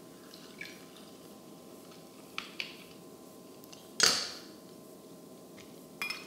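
Lime juice squeezed with a handheld citrus press into a metal jigger: a few faint ticks and drips over quiet room tone, then one sharp knock about four seconds in as the press is set down on the stone counter.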